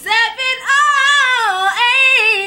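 A woman singing solo, holding a long note that slides down in pitch, then starting a new phrase near the end.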